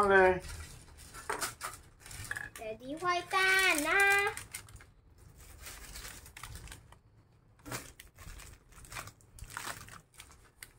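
Sheets of baking paper rustling and crinkling as they are handled, with scattered soft clicks. Sticky gingerbread dough is being peeled off the paper. A child's wordless voice sounds briefly at the start and again in a longer drawn-out call about three seconds in.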